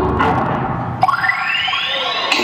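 Electronic dance music with synthesized swooping effects. A short falling swoop comes just after the start, and a long rising sweep begins about halfway through.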